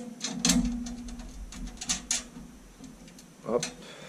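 A washer and lock nut being fitted by hand onto a bolt on a moped's steel frame: several light metal clicks in the first half, with a low rumble of the frame being handled.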